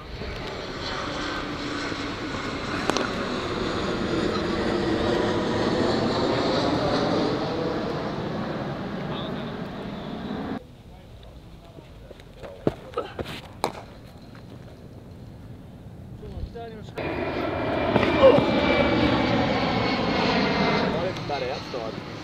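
Aircraft engines passing overhead, a loud rushing roar with slowly sweeping tones, cut off abruptly about ten seconds in. After a quieter stretch with a few sharp knocks, the aircraft noise starts up again abruptly and fades near the end.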